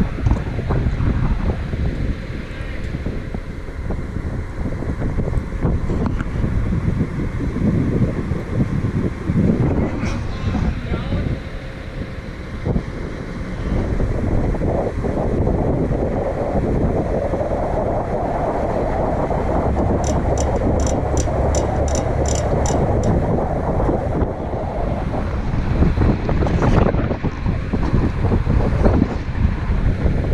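Wind buffeting the microphone high on top of a grain bin, with a steady low machine hum underneath. About two-thirds of the way through comes a quick run of short high-pitched pulses, about four a second.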